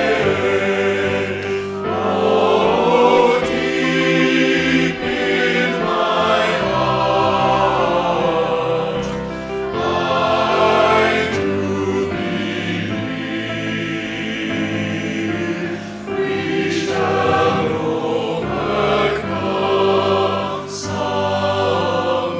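Mixed choir singing in harmony, the voices of individually recorded singers blended into one ensemble, in sustained phrases that swell and ease.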